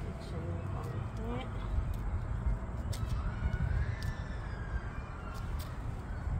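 Faint, indistinct talking over a steady low rumble, with a few light clicks.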